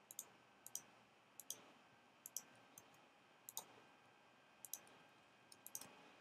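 Faint computer mouse clicks, mostly in close pairs, about once a second over near-silent room tone.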